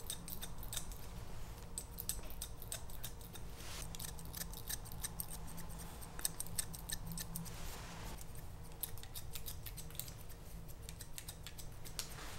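Barber's steel scissors snipping hair in quick runs of crisp snips, with brief pauses between the runs, cutting scissor-over-comb close to the ear.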